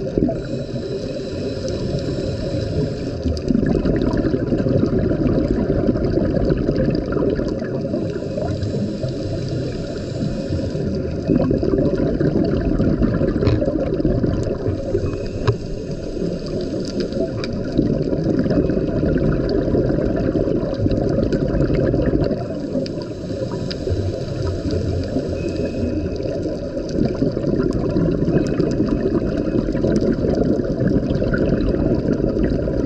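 Scuba regulator breathing heard underwater: long surges of rumbling, gurgling exhaled bubbles every several seconds, with a quieter hiss between them.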